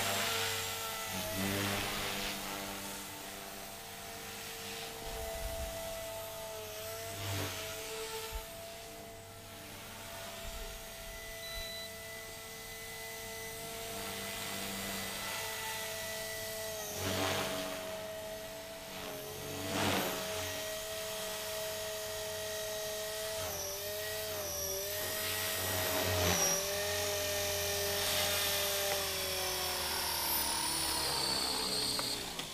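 Blade 300 X electric RC helicopter fitted with a 440H brushless motor, flying with a steady rotor and motor whine whose pitch dips and bends as it manoeuvres, and with a few brief loud swells. Near the end it sets down and the whine starts to wind down.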